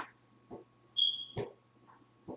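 A single short, high-pitched electronic beep about a second in, the signal that the wireless mouse's USB receiver has just been plugged in; a few faint knocks from handling the receiver around it.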